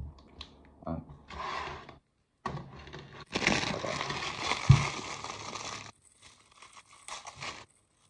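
Plastic food wrapping crinkling and tearing as a sachet of Italian vinaigrette dressing and wrapped lunch items are opened and handled, in a long busy stretch through the middle. A single dull thump lands partway through it and is the loudest sound.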